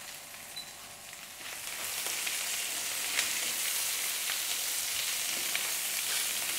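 Endive leaves frying in hot butter in a frying pan: a steady sizzle that grows louder about two seconds in, with a few faint ticks.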